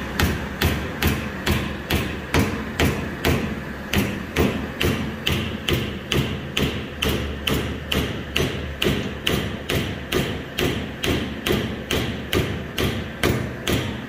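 A wooden chisel handle with a brass ferrule being driven down onto the chisel's tang with even, rapid strikes, about two to three a second, each a sharp thud on the wood.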